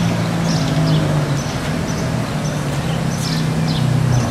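A motor vehicle engine running steadily with a low hum, with short high-pitched sounds recurring every second or so.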